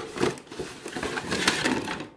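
Crackling and crinkling of a boxed diecast model's cardboard and plastic packaging being handled, a run of small sharp crackles that is loudest about one and a half seconds in.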